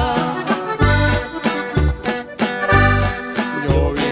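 Norteño corrido in an instrumental passage: button accordion carrying the melody over a bass line on a steady beat and strummed guitar.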